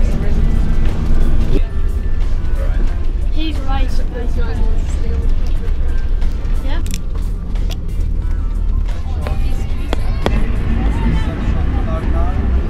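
Steady low rumble of the truck's engine and road noise heard inside the passenger cabin, with music and voices over it and a few sharp clicks in the second half.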